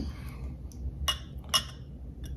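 A few light glass clinks and knocks as a wine glass and a glass juice bottle are handled, the last and loudest about one and a half seconds in.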